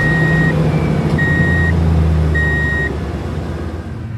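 Truck engine running low and steady while a reversing alarm beeps three times, each beep about half a second long.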